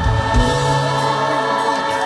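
Live band playing a slow ballad with sustained singing over held chords; a bass note comes in about half a second in.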